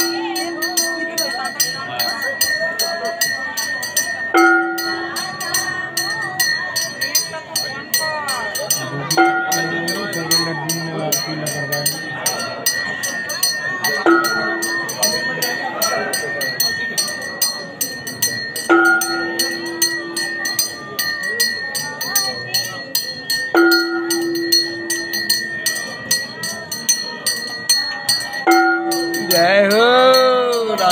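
Temple aarti: bells and cymbals ringing rapidly without pause, with a deeper ringing tone sounding about every five seconds, over voices chanting.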